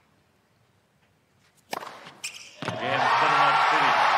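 Near silence, then a tennis serve struck hard about a second and a half in and a second sharp knock half a second later as the ace goes through, and a stadium crowd erupting in cheers and shouts for the last second or so: the ace that ends the match on match point.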